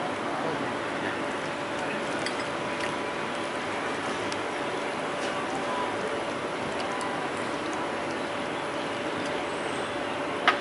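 Steady room hiss and a faint hum, with a few faint clicks and squelches from gloved hands mixing raw prawns into an egg-batter and chili-powder marinade in a ceramic dish.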